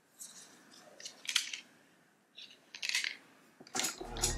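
Makeup being handled: a few faint, short scratchy rustles and one sharper click about a second and a half in, as a powder bronzer compact and brush are worked.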